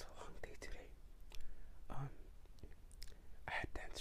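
Quiet close-miked mouth sounds of eating: soft clicks and smacks from chewing, with brief soft whispering.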